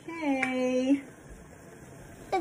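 A drawn-out "okay" in a voice, with one small sharp click about half a second in: the snap-open flip-top cap of a plastic squeeze ketchup bottle.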